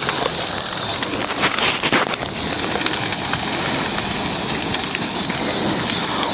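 Large bonfire of dry scrap wood and furniture burning hard: a steady rushing noise of flames with frequent sharp cracks and pops.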